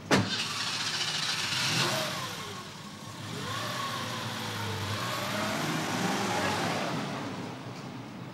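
A car door slams shut, then the car's engine starts and runs up as the car pulls away, its pitch rising and falling and fading near the end.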